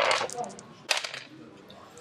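Two small six-sided dice rattled in a hand and thrown onto a game board, landing with a sharp click about a second in.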